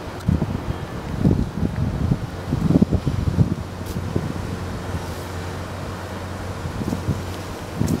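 Wind buffeting the microphone in irregular gusts, strongest in the first few seconds and again near the end, over a steady low machine hum.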